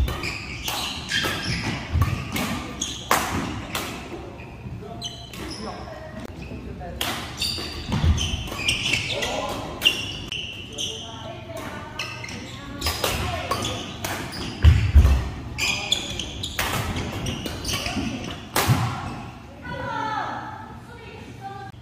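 Badminton rally: rackets striking the shuttlecock in sharp cracks at irregular intervals, with heavier thuds of footwork on the wooden court floor twice, about eight and fifteen seconds in.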